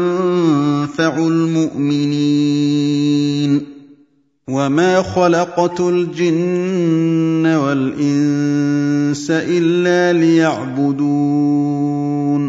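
A man's voice reciting the Quran in Arabic in the melodic, drawn-out tajwid style, holding and bending long notes in two phrases with a short break about four seconds in.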